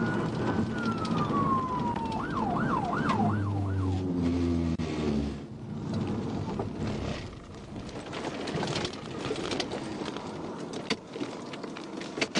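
Police car siren heard from inside the pursuing patrol car. It starts with a slow rising-and-falling wail, switches to a fast yelp about two seconds in, and fades out around five seconds in. That leaves the steady road and wind noise of the cruiser travelling at about 100 mph.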